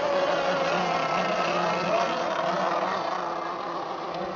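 Radio-controlled racing boats' motors whining at high revs across the water, the pitch wavering as they run, fading slightly near the end.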